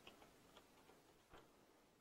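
Near silence with a few faint, irregular computer keyboard key clicks as a word is typed, the clearest about two-thirds of the way through.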